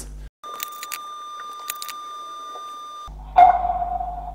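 An Annke wireless 1080p pan-and-tilt IP camera plays its 'water drop' chime through its built-in speaker about three seconds in: a single sudden drop-like tone that fades within a second. The chime signals that the camera has booted up correctly. Before it there is only a faint steady high tone with a few light clicks.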